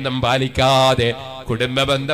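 A man's voice intoning through a microphone in a chanting, sing-song delivery, with one long drawn-out syllable about half a second in.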